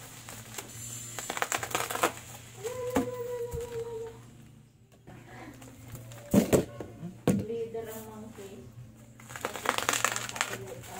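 Plastic bubble wrap crinkling and crackling in bunches as it is handled and pulled off a bicycle rim, with two sharper cracks about two-thirds of the way through.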